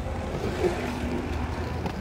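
Freeskate wheels rolling over brick pavers: a steady, rough low rumble.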